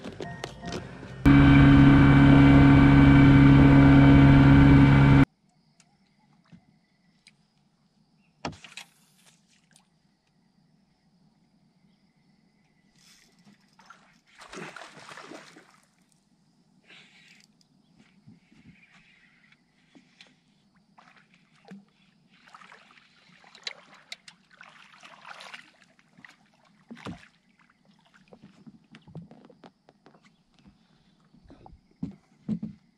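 Bow-mounted electric trolling motor running with a loud, steady hum for about four seconds, starting and stopping abruptly; after it, only faint scattered knocks and water sounds.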